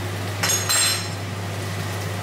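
Metal cookware clattering on the hob: a sharp knock about half a second in, then a bright ringing clink for about half a second. A steady low hum runs underneath.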